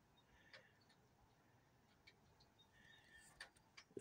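Near silence: outdoor room tone with a few faint ticks scattered through it.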